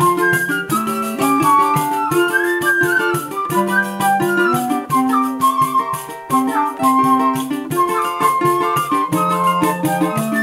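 A small choro ensemble playing live: transverse flute and clarinet carry a lively melody over the steady jingling beat of a pandeiro and the strummed chords of a cavaquinho.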